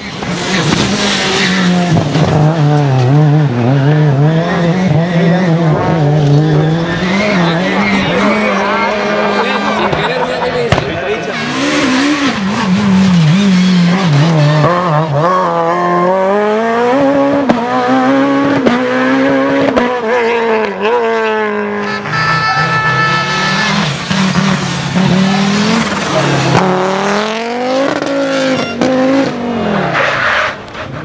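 Rally cars driven flat out past the microphone one after another, their engines revving up and dropping back again and again through gear changes and lifts, with tyres skidding and squealing on the dusty stage road.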